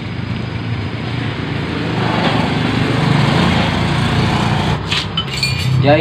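A small engine running steadily, growing louder over the first three seconds, with a few light clicks a little before the end.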